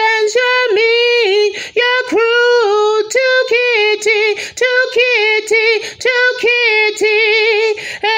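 A woman singing unaccompanied in a high voice, in short held phrases with brief breaks. Her pitch wavers in a quick vibrato near the end.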